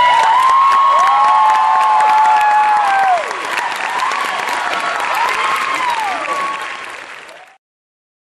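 Audience applauding, with a few long whistles that slide up, hold and fall away. The clapping eases about three seconds in, then the sound cuts off abruptly near the end.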